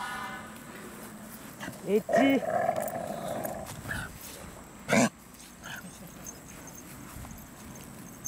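Shiba Inu growling a warning at an unfamiliar dog, with a single short, sharp bark about five seconds in.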